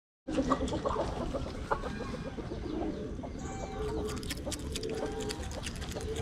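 Animal calls: a series of short, level-pitched calls repeating roughly once a second, with scattered clicks early on, over a steady low rumble.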